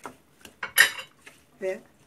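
A stainless steel pot clanks once, sharp and ringing, a little under a second in, with a light click or two around it as the salad is mixed by hand inside it.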